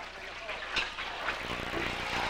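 Wok cooking: sauce sizzling in a hot wok over the steady noise of the burner, with a few sharp clinks of the metal ladle against the wok.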